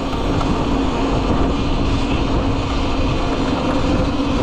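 Cake Kalk& electric motorcycle ridden at low speed: wind rumble on the handlebar camera's microphone and road noise, with a steady low hum throughout and no engine sound.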